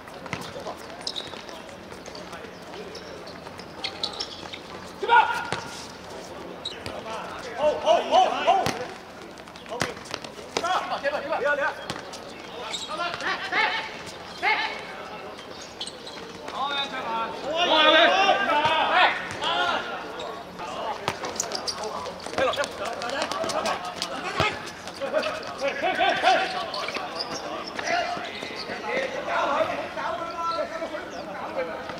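Football kicked and bouncing on a hard court, sharp thuds scattered through, amid players' shouts and calls; the loudest shouting comes about two-thirds of the way in.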